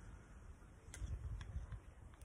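Faint handling noise with two light clicks, about a second and a second and a half in, as a fuel pressure regulator is worked loose by hand.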